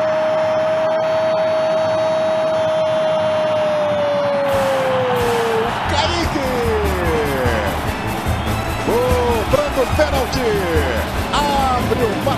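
A football commentator's long held goal shout, one steady note that slides down and ends about five seconds in. Background music with a thudding beat comes in partway through and carries on to the end.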